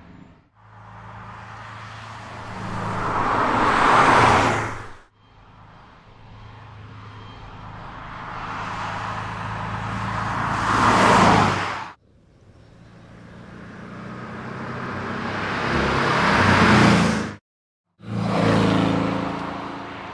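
Porsche 718 Boxster GTS's 2.5-litre turbocharged flat-four boxer engine, heard as the car drives past at speed three times. Each pass grows louder to a peak and then cuts off abruptly. After a brief silence another pass begins near the end.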